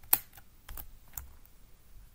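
A few keystrokes on a computer keyboard: one sharp, loud click about a tenth of a second in, then scattered quieter taps.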